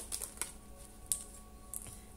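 A few light clicks and taps as tarot cards are handled and laid down on a wooden table.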